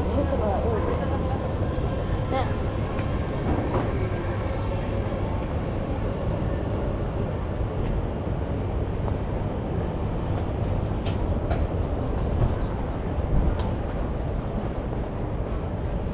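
Busy pedestrian street ambience: passersby talking over a steady low rumble of city noise, with a few sharp clicks in the second half.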